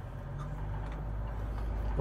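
A car approaching on the road, its low engine rumble growing steadily louder.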